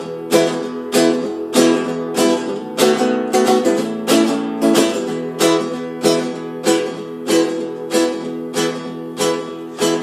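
Acoustic guitar strumming chords in a steady rhythm, about two strokes a second.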